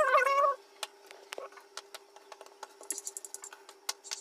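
A high, wavering voice-like sound ends about half a second in. After it come faint light taps and clicks of roti dough being worked and rolled on a kitchen counter, with a short run of quick rattling clicks near the end.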